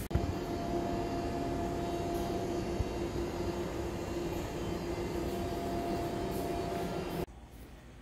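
Steady hum of building machinery: an even drone with a steady low tone and a fainter one above it. A click sounds at the start, and the hum cuts off abruptly about seven seconds in, leaving quiet room tone.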